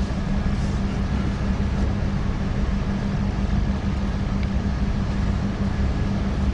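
A steady low hum and rumble with a constant tone, unchanging throughout, and a faint hiss above it.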